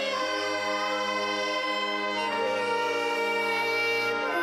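Instrumental ensemble playing the school alma mater in slow held chords, with a chord change about two seconds in.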